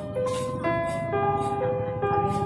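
Music: a simple jingle-like melody of clean, held electronic notes stepping up and down about every half second, over a low rumble.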